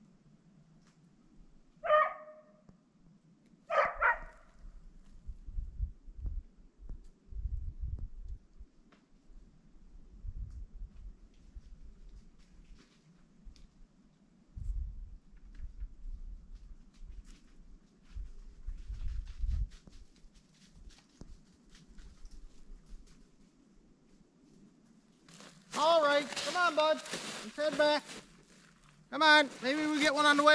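A dog barks twice, two short sharp barks about two seconds apart, while out flushing a rabbit.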